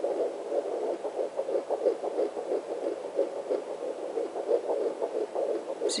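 Fetal heartbeat played through the loudspeaker of a Sonotech Pro handheld fetal Doppler: a fast, even pulse of about three beats a second, in the 170s a minute typical of this baby.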